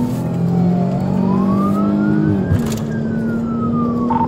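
Police siren on a wail setting, sweeping slowly down in pitch, back up to a peak about two and a half seconds in, then down again, over a car engine running steadily beneath it.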